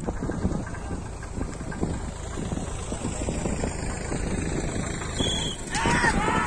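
Racing bullock team and cart running on a dirt track: a steady low rumble with many small knocks. Near the end, spectators break into loud shouting.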